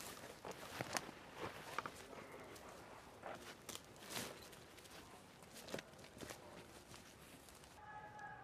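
Footsteps through forest undergrowth, boots scuffing and brushing through low vegetation with irregular crackles of twigs and gear rustle.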